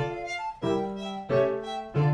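Early baroque chamber music: a violin over a basso continuo, moving in even notes that change about every two-thirds of a second.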